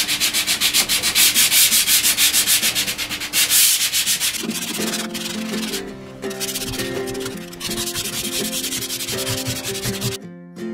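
Hand sanding of a marine plywood bulkhead corner, with quick back-and-forth scratchy strokes several times a second. About halfway through, acoustic guitar music comes in under the sanding.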